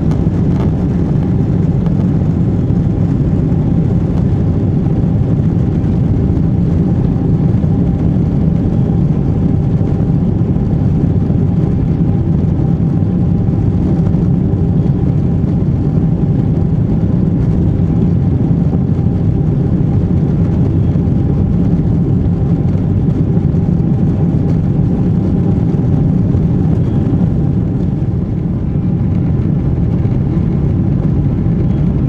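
Cabin noise of a Boeing 777-200's twin jet engines at takeoff thrust as the airliner lifts off and climbs out. It is a loud, steady rush with a faint steady whine above it.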